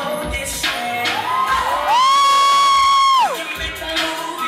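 Dance music with a steady beat, and over it a single shrill, sustained scream from the audience about two seconds in, held for over a second and dropping off at the end; it is the loudest sound.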